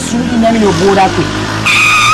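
A voice speaking, then a brief, steady, high-pitched squeal near the end.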